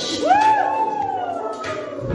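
A person's long hooting "oooh" of hype, rising quickly and then sliding slowly down in pitch for over a second, over dance music whose deep beat has dropped out.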